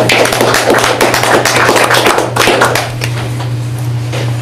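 Small audience applauding, dense clapping that thins out and stops about three seconds in.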